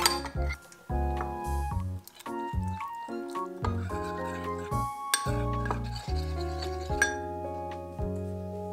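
Background music with bass and chords, over a metal spoon clinking and scraping against a small ceramic bowl while gochujang and water are stirred into a sauce: a sharp clink at the start, scraping about two and five seconds in, and another clink near the end.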